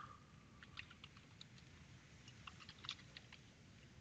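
Faint typing on a computer keyboard: a dozen or so light, scattered key clicks.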